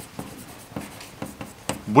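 Chalk on a blackboard as a curve is drawn: a string of short taps and scratches of the chalk against the board.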